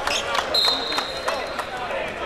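Referee's whistle blown in one long, steady, high blast starting about half a second in, stopping play for a loose-ball foul. Around it are the short thuds and squeaks of players scrambling for the ball on a hardwood court.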